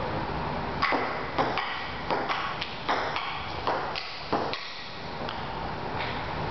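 A table tennis rally: quick sharp clicks of the ball bouncing on the table and striking the paddles, about a dozen hits a few tenths of a second apart, some with a brief ringing ping. The rally starts about a second in and stops about a second before the end.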